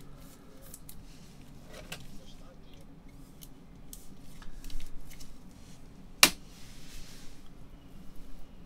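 Gloved hands working a trading card into a clear plastic holder: light plastic scraping and rustling with small clicks, and one sharp click about six seconds in.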